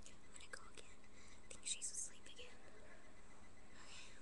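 A girl whispering close to the microphone, in a few short breathy bursts about halfway through, over a faint steady hiss.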